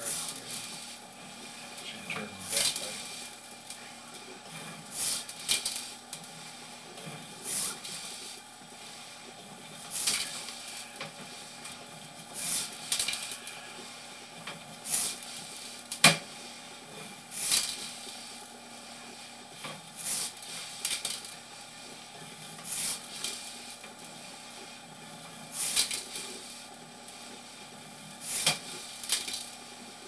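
Push-rod cable of a sewer inspection camera being pulled back out of a drain pipe, a short scraping rush of noise with each pull, about every two to three seconds, over a steady faint electrical hum.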